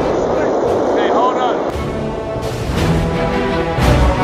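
Soundtrack music fades in about halfway through, after a man's short laugh, with held tones and a heavy low hit just before the end.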